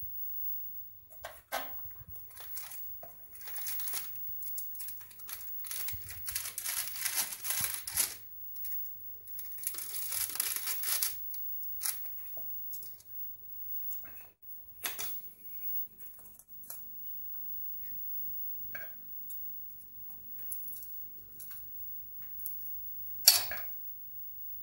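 Rustling and crackling of baking paper as freshly baked crescent rolls are handled on a lined baking tray, in two long stretches of a few seconds each, with scattered light knocks. One sharp knock near the end.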